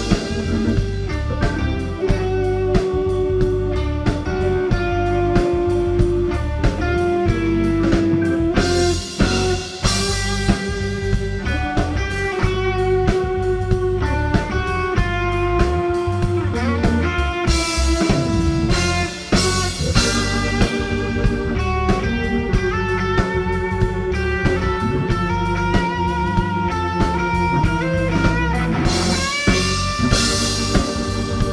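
Live blues band playing an instrumental passage: a lead electric guitar from a Telecaster-style guitar plays sustained notes with vibrato over drums, bass and keyboards. Cymbal crashes come about nine seconds in, near the middle and near the end.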